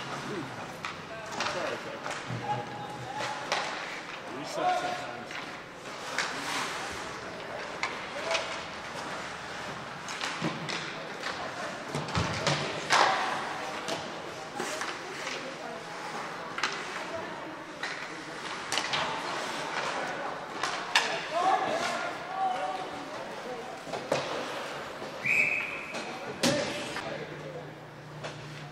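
Ice hockey game play: sharp knocks of sticks, puck and boards all through, with players shouting. A referee's whistle blows once, briefly, near the end, stopping play for a faceoff.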